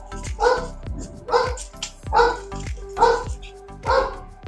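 A dog barking repeatedly, about one bark every second, over background music with a steady beat.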